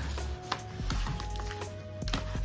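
Soft background music with held notes, over light taps and handling sounds as a paper dust jacket is fitted onto a hardcover book.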